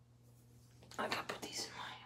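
A person whispering, starting about a second in.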